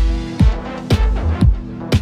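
Deep house music in a DJ mix: a steady four-on-the-floor kick drum about twice a second over held synth chords and deep bass.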